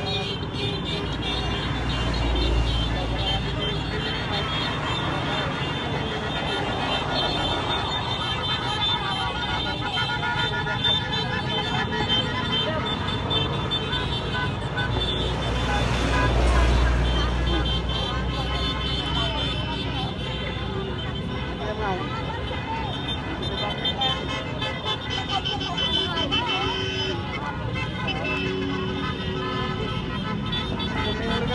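A long motorcade of scooters and motorcycles passing, engines running, with horns tooting and many people's voices. A louder low rumble comes as a vehicle passes close about halfway through.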